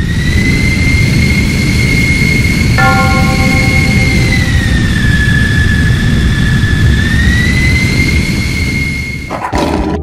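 Jet airliner engine sound effect: a loud roar with a high turbine whine that dips in pitch for a couple of seconds past halfway and rises back. The whine stops shortly before the end as the roar falls away.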